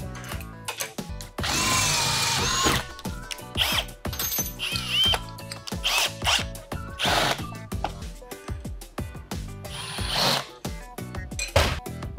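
Cordless drill boring a hole through steel, its motor whining in several runs, the longest about a second in, with background music under it.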